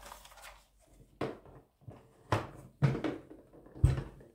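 Four short, hard plastic knocks and clicks, spaced unevenly, as a canister vacuum cleaner's floor nozzle is pushed and clicked into its storage holder on the back of the vacuum body.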